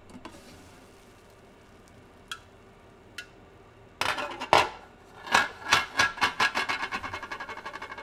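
Glass pot lid lifted off with a couple of light clinks and a louder knock about halfway through. Then a wooden spoon scrapes and stirs through cooked millet in the pot in quick repeated strokes, several a second.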